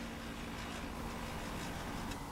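Canon Pixma MX350 inkjet printer running its internal mechanism with a faint, steady low hum while it works through a software reset.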